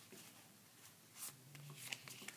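Faint rustling and sliding of a stack of Pokémon trading cards being handled and shuffled from hand to hand, with a couple of light card flicks about a second in and near the end.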